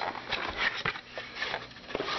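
Cardboard box being opened by hand: the lid and flaps scraping and rustling, with a few light knocks.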